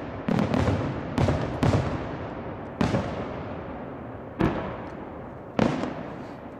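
Aerial firework shells bursting in a night display: about seven sharp reports, four in quick succession in the first two seconds and then more spaced out, each followed by a long echoing rumble that fades away.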